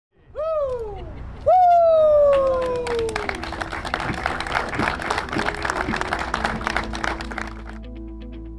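Two falling, swooping tones, then a crowd clapping in applause from about two and a half seconds in, dying away near the end. Background music enters under the applause.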